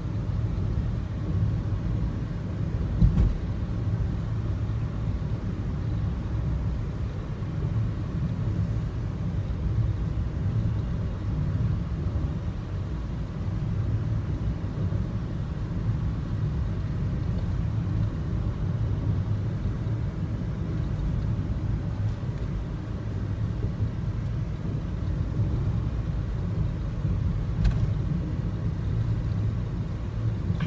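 Steady low engine and road rumble heard inside a moving car's cabin. Two brief knocks stand out, one about three seconds in and one near the end.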